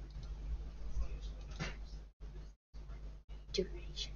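Quiet mumbled speech, a drawn-out "uh" and then "two", over a steady low electrical hum on the recording. The hum cuts out abruptly to silence a few times in the second half.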